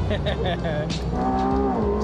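McLaren sports car's twin-turbo V8 heard from inside the cabin while driving, a constant low rumble with a steady engine note that comes in about halfway through and dips slightly in pitch. A brief voice sounds at the start.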